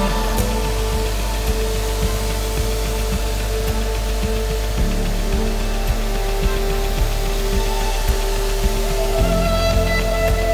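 Background music: held notes that change every few seconds over a steady beat.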